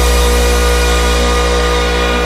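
Nightcore (sped-up electronic) remix held on a sustained synthesizer chord over a deep steady bass note, with no drums, slowly fading.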